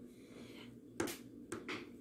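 Faint sound of a serrated knife cutting through a baked carrot loaf, with a sharp click about a second in and a couple of softer knocks after it.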